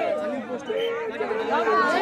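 A crowd of many voices chanting a repeated slogan in unison, with shouting and chatter mixed in.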